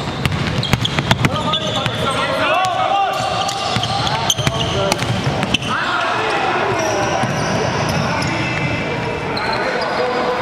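A basketball dribbled on a hardwood gym floor, several sharp bounces in quick runs, with sneakers squeaking and players shouting on court in a large echoing hall.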